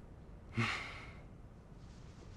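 A short, soft breathy exhale, like a sigh, about half a second in, fading within about half a second over faint room tone.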